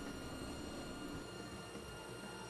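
Table saw running while a maple board is ripped along the fence: a steady machine hum with faint, even high tones.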